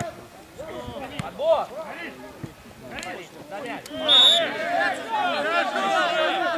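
Referee's whistle blown once, a short high blast about four seconds in, stopping play for a foul, with men shouting on the pitch before and after it.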